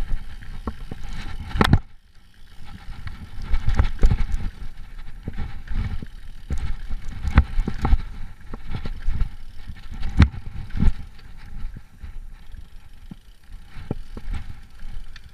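Giant Trance Advanced 1 full-suspension mountain bike descending a dirt forest trail at speed: the tyres keep up a low rumble over the ground, broken by frequent sharp knocks and rattles as the wheels and suspension hit roots and bumps. There is a brief lull about two seconds in.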